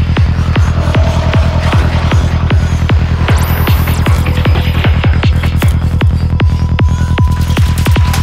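Dark psytrance (forest/darkpsy) at 154 BPM: a kick drum on every beat, about two and a half a second, over a deep steady bassline, with a thin high electronic tone joining about three seconds in.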